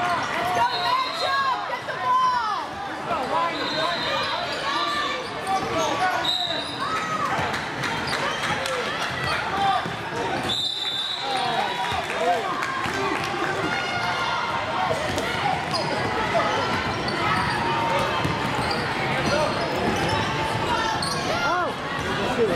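Basketball being dribbled on a hardwood gym floor, with sneakers squeaking and voices of players and onlookers echoing in a large hall.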